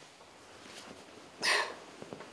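A single short, sharp breath about one and a half seconds in, over quiet room tone.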